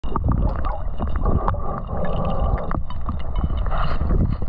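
Underwater noise picked up by a diver's camera: a steady low rumble of water moving over it, with many scattered clicks and patches of hiss.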